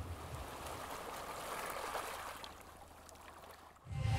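Faint, steady rushing of water, like gentle sea ambience, fading out shortly before the end.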